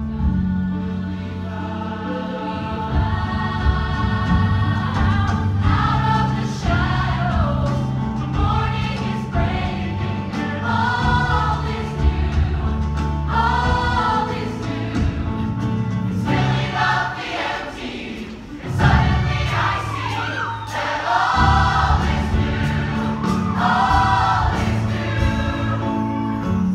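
A large ensemble of teenage voices singing a show-tune medley in harmony over live band accompaniment. The sound dips briefly about two-thirds of the way through, then swells back to full.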